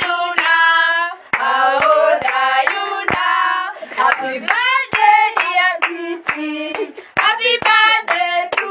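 A group of people singing a celebration song together, with hands clapping along in a roughly steady beat of about two claps a second.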